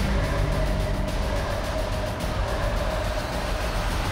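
Dramatic trailer score with one note held throughout, over a heavy low rumble of action sound effects.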